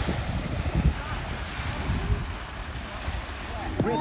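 Small waves breaking and washing up on a sandy beach, a steady surf hiss, with wind buffeting the microphone.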